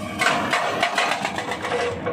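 Excavator-mounted hydraulic rock breaker hammering its chisel into rock, a rapid run of sharp blows starting about a quarter second in, over the steady sound of the excavator's engine.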